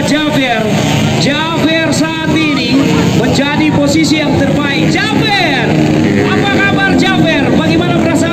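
Several dirt bike engines running and being revved, their pitch rising and falling, mixed with voices.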